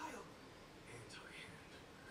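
Near silence: quiet room tone with faint, whispered or murmured speech.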